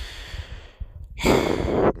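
A man sighing: a breathy exhale at the start that fades out, then a longer, louder sigh about a second in.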